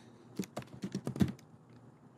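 Typing on a computer keyboard: a quick run of about seven keystrokes in under a second, the last ones the loudest.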